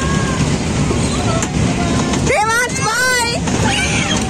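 A children's car merry-go-round ride spinning with a steady low rumble, under scattered voices. About two and a half seconds in, a high, wavering voice calls out for about a second.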